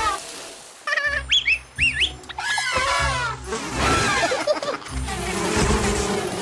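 Cartoon soundtrack: background music with steady bass notes, over which come high, wavering and sliding squeaky cartoon sound effects, most of them about a second to four seconds in.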